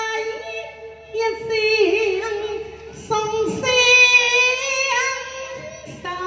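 Thai likay singing: a high voice sings long, wavering phrases over a steady held instrumental note. It falls away about a second in, then comes back louder from about three seconds.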